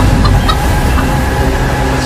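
A black chicken clucking in a few short calls over a loud, low rumbling film-score drone.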